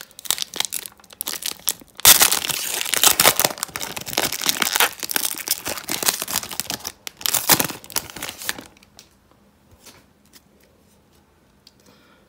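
Foil trading-card pack wrapper being torn open and crinkled by hand, loudest from about two seconds in; the crinkling dies away about three seconds before the end.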